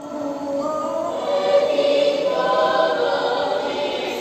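Choir singing long held notes, swelling up from a soft start over the first second or so, as part of a projected show's soundtrack played over a theater's speakers.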